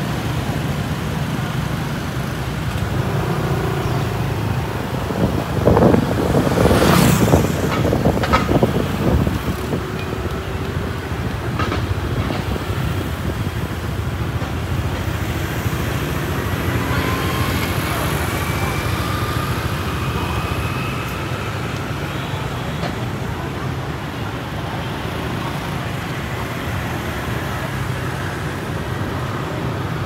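City street traffic: cars and motorbikes running through a junction in a steady low rumble, with a louder vehicle passing close about six seconds in.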